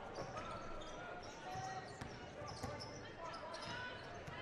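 A basketball being dribbled on a hardwood court, a series of faint thumps, under a low murmur of arena crowd voices.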